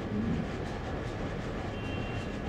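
Steady low rumble of background noise, with no impacts.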